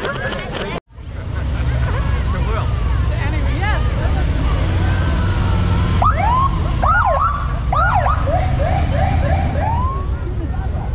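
Police motorcycle sirens giving short rising whoops from about six seconds in, running together into a quick series of yelps near the end, over a steady low rumble.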